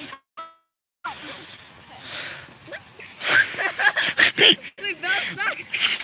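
Several young girls' voices talking and exclaiming, loudest and busiest from about halfway through. The sound cuts out completely for most of the first second.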